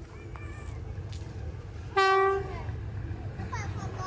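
A diesel locomotive's horn sounds one short, loud blast about halfway through, dropping in pitch as it cuts off, over the low rumble of the locomotive approaching the station.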